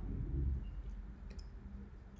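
A pause in speech: faint room tone with a low thump near the start and a couple of faint, brief clicks about halfway through.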